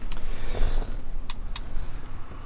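Camera handling noise inside a car cabin: a steady low rumble with three sharp clicks, one just after the start and two close together about a second and a half in.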